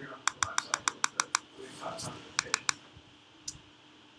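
Rapid clicking of a computer mouse button: a quick run of about eight clicks, then three more after a short pause, each one incrementing a web-page counter.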